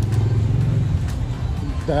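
A car engine running at low speed close by, a steady low rumble that eases off about a second in.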